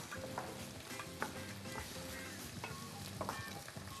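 Faint, steady sizzle of rice toasting in hot oil, with a few light knife taps on a cutting board as an eggplant is diced.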